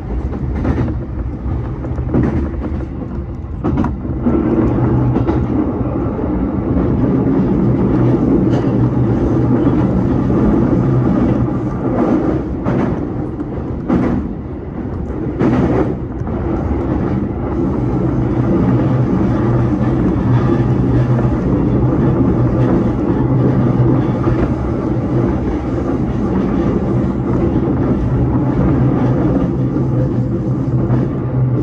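JR Yokohama Line E233-series electric train running at speed, heard inside the driver's cab: a steady hum of motors and wheels on rail. A few sharp clacks over rail joints or points come around the middle.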